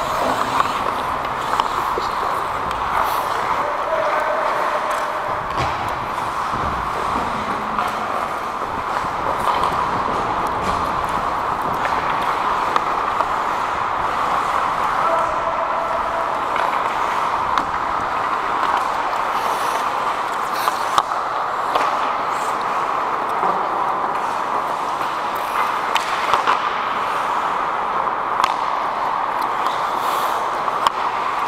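Ice hockey play heard from the referee's helmet camera: a steady noise of skating on the ice with scattered sharp clicks and knocks of sticks, puck and skates.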